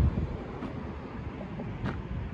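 Outdoor ambience: wind rumbling on the microphone over a low, steady hum of traffic, with a short click near the end.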